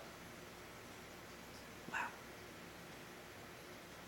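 Quiet room tone, broken once about halfway through by a single short, sharp sound lasting a fraction of a second.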